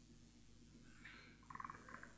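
Near silence: the faint room tone and hum of an old interview recording, with a short, faint, fast creaking rattle in the last half second.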